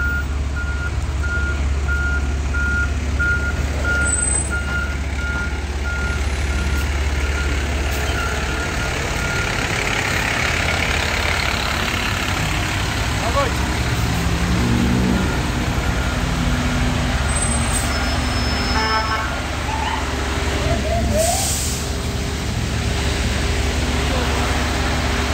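Fire rescue truck backing up: its reverse alarm beeps evenly over the steady low rumble of its diesel engine, and the beeping stops about ten seconds in while the engine keeps running.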